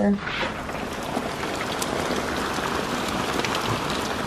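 Steady rain mixed with small hail: an even hiss with a few scattered ticks of hailstones striking.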